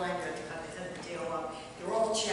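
Speech: a woman talking, with no other clear sound.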